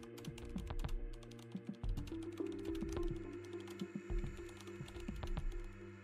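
Computer keyboard typing: a quick, irregular run of key clicks as a short sentence is typed, over background music with steady held notes.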